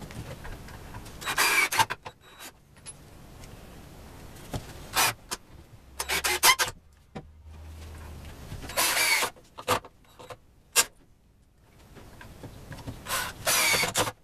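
Cordless drill driving pocket-hole screws into a 2x4 frame in short bursts of about half a second each, some six times, with pauses between.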